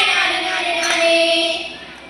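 A group of girls singing a Kerala folk song (nadan pattu) together, holding a long note that fades away near the end.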